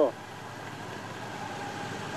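Steady engine drone and road noise from the race vehicles accompanying the riders up the climb, with a faint steady tone over it.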